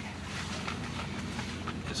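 A steady low hum with a faint hiss, and a few soft faint ticks.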